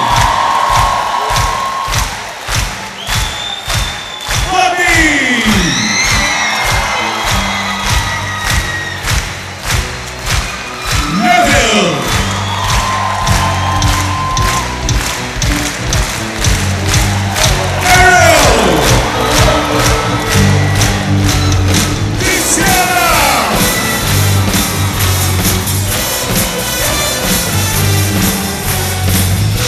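Concert audience clapping along in a steady rhythm, with cheering, over a stage band; the bass and band come in fully about twelve seconds in. A falling swoop in pitch recurs every five or six seconds.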